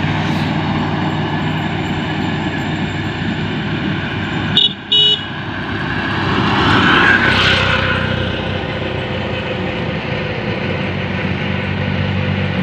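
Road traffic: a steady low engine hum throughout, two short horn toots about five seconds in, and a CNG auto-rickshaw passing close about seven seconds in.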